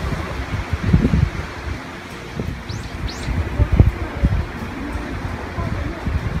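Wind buffeting the microphone in irregular low gusts, with two short, high, rising bird chirps about three seconds in.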